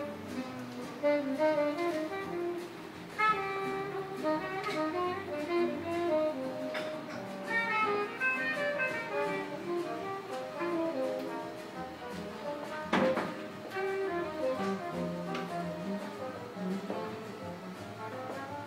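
Instrumental music played from a vinyl record through a vacuum-tube amplifier and speakers, heard in the room. A single sharp knock comes about two-thirds of the way through.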